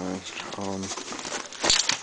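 Nylon backpack and the plastic sheeting under it rustling and crinkling as the bag is handled, with a louder rustle near the end.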